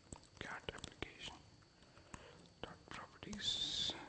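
Faint clicks of keys typed on a computer keyboard as a terminal command is entered, under quiet whispered muttering, with a short hiss near the end.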